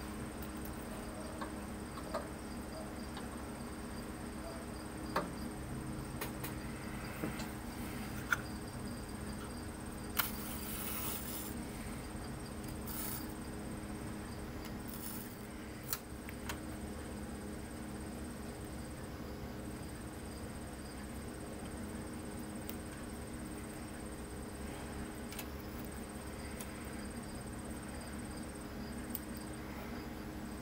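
Small handling sounds of steel tweezers and masking tape on a plastic model: a handful of short sharp ticks and a brief rustle about a third of the way in. Under them runs a steady background hum with a thin high whine.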